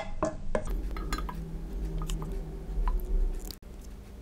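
A spoon scooping thick zucchini purée from an enamel pot into a glass jar: scattered knocks and clinks of the spoon against pot and jar, with soft squishing of the purée. The sound cuts off abruptly shortly before the end.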